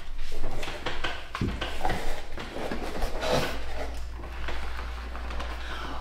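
Handling noises: clicks and rustles as a screw lid is turned on a small spice jar and packaged items are moved about in a cardboard box.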